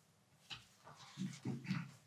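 Pages of an altar missal being handled, with a few soft clicks, followed by a short, low, hum-like voiced sound lasting under a second.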